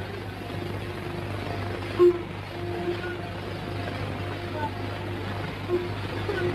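Steady hum and hiss of an old 1950s film soundtrack, with faint short held notes scattered through it and one brief louder note about two seconds in.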